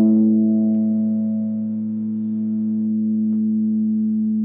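Les Paul-style electric guitar letting a single strum ring out, one steady sustained pitch with a slight dip and swell in level.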